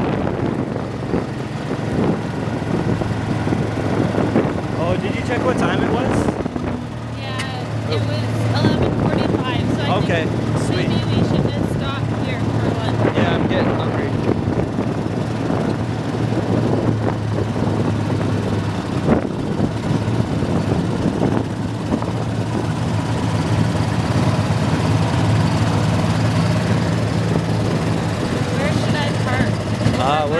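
A small utility vehicle's engine running steadily while it drives along a gravel road, with tyre noise under it.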